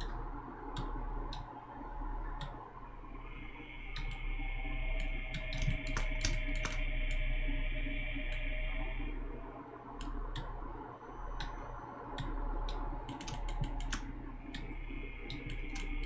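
Scattered clicks of a computer keyboard and mouse as keys such as Shift are pressed while sculpting in Blender. A faint steady whine starts about three seconds in, stops around nine seconds, and comes back near the end.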